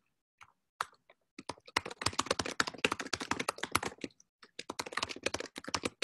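Fast typing on a computer keyboard: a rapid run of keystrokes starting about a second and a half in, a short pause around four seconds, then a second burst.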